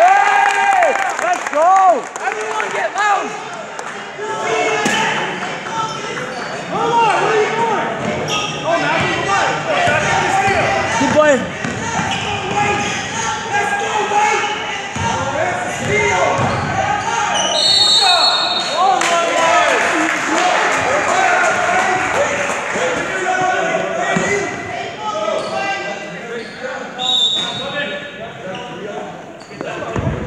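Basketball game in a gym: a ball bouncing on a hardwood court and sneakers squeaking on the floor, over spectators' voices, with a short whistle blast about 18 seconds in.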